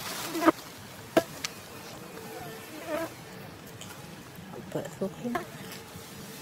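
Insect buzzing, with a few sharp crackles of dry leaves as a young macaque handles the leaf litter; the loudest crackles come about half a second and a little over a second in.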